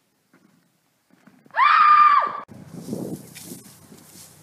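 A single loud, high-pitched scream about a second and a half in, held at one pitch for under a second and then cut off. It is followed by outdoor wind-like noise.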